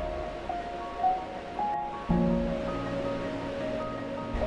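Slow background music of held notes stepping in pitch, with lower notes coming in about two seconds in, over a steady wash of surf.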